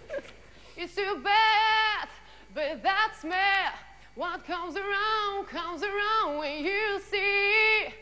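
A young woman singing unaccompanied in several phrases, with long held notes that waver in vibrato, the last note held to the end.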